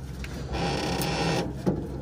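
A small electric motor whirring steadily for about a second, starting about half a second in.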